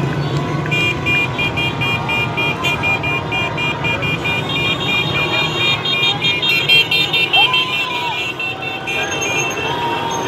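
Car horns sounding a rapid, high-pitched beeping of about four beeps a second for several seconds, over the rumble of slow traffic and shouting voices.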